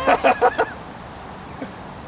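A man's short burst of excited laughter and exclaiming, broken into several quick pulses, lasting under a second. After it there is only a steady, quiet outdoor background.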